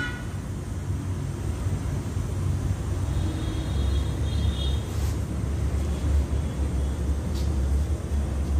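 Bajaj Platina 110's single-cylinder engine idling with a steady low rumble, with a couple of faint clicks.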